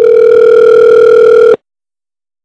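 Telephone ringback tone over the line: one steady two-second ring of an outgoing call, cutting off sharply about a second and a half in while the line waits to be answered.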